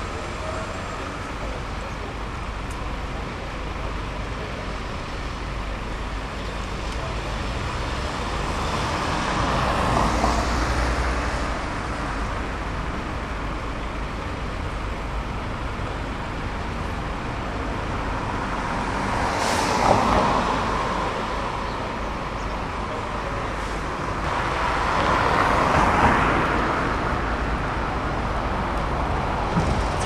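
Single-deck bus idling at a stop, a steady low rumble, while road traffic goes by; three passing vehicles swell up and fade away, about ten, twenty and twenty-six seconds in.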